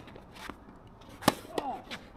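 Tennis ball struck by a racket: one sharp, loud hit about a second in, after fainter clicks of earlier ball contact. Short sliding tones follow the hit.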